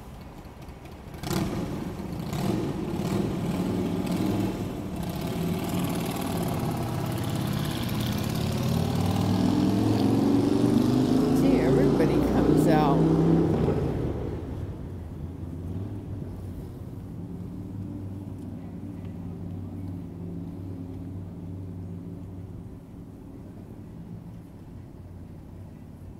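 A motor vehicle engine accelerating: its note rises steadily in pitch and grows louder for about ten seconds, then drops away suddenly as it passes, leaving a quieter steady low engine hum of traffic.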